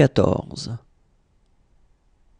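A voice pronouncing the French number 'soixante-quatorze', ending less than a second in, followed by near silence.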